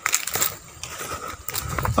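Footsteps crunching over dry leaf litter and soil, an irregular run of clicks and rustles, with a low rumble near the end.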